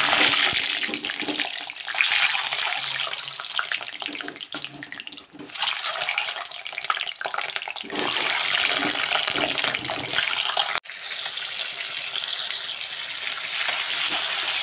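Whole peeled boiled eggs frying in hot oil in an iron kadhai, a steady loud sizzle with oil spattering. The sizzle flares up a few times as more eggs go into the oil, and breaks off for an instant near the end.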